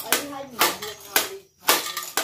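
Hand jab planter (matraca) striking a concrete floor about four times, a sharp clack every half second or so, as it is worked to test its seed metering after its regulator was adjusted.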